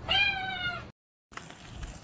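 A domestic cat meowing once, a single call a little under a second long that rises slightly and then falls in pitch.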